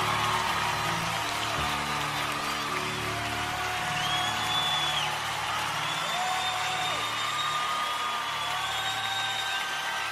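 A live band playing soft, sustained opening chords of a ballad, with the concert audience cheering and whistling over it.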